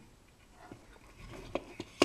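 Faint handling noise from a video receiver's metal case and its wires, with a few small clicks in the second half.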